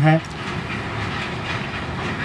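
A steady rushing background noise, even in level, with no clear rhythm or tone. A man's voice ends a word just at the start.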